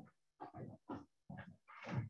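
A handful of short, faint, rough throat sounds from a person getting ready to speak, about five in quick succession.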